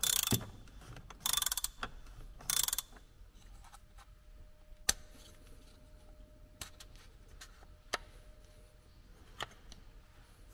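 Ratchet wrench clicking in three short bursts as its socket unscrews the oil filter housing cap, followed by a few scattered light clicks and knocks of parts being handled.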